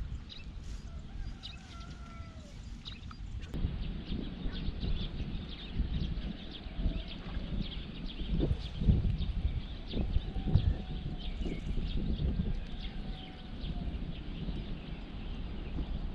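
Wind gusting on the microphone as an uneven low rumble, strongest around the middle, with faint bird chirps above it.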